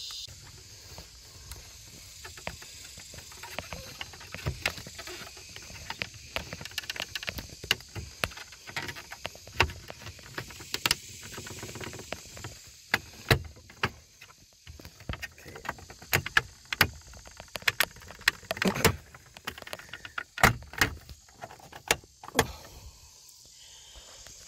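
Plastic trim tool prying at a Cadillac STS lower dashboard trim panel: irregular plastic clicks, creaks and knocks as the panel's retaining clips are worked loose, the sharpest ones in the second half.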